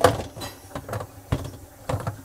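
Hard plastic clicks and knocks as the dishwasher's lower spray arm is fitted onto its centre hub: a sharp knock at the start, then a few lighter ones, with two more knocks after about a second.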